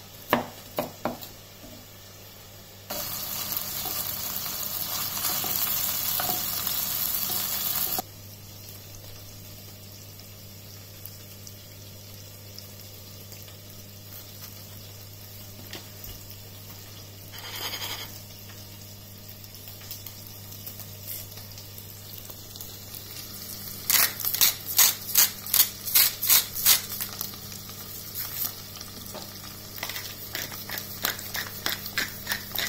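A knife chopping nuts on a wooden board for about a second, then about five seconds of loud sizzling from frying that cuts off abruptly, over a steady low hum. Near the end, a quick run of about a dozen grinding strokes from a wooden pepper mill.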